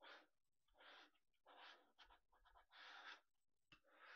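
Plastic scraper rubbed over transfer tape in about six short, faint scraping strokes, burnishing the tape down onto adhesive vinyl.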